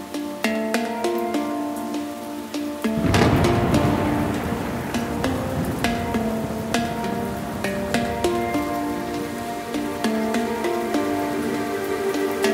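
Background music: a melody of short plucked notes that step up and down in pitch. A low rumbling layer comes in about three seconds in and fades slowly.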